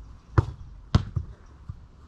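Football impacts: two sharp thuds about half a second apart, followed by a couple of softer knocks.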